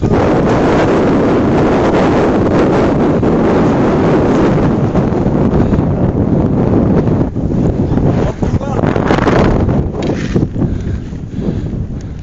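Strong wind blowing across the camera's microphone: a loud rushing noise, steady at first, then more uneven with gusts and dips in the second half.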